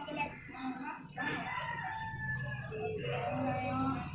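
A rooster crowing in the background: one long, drawn-out call starting about a second in and lasting nearly three seconds, over a low steady hum.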